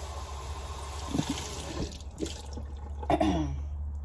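Kitchen tap running into the sink as baby bottles are rinsed, an even hiss of water with a few light knocks of the bottles.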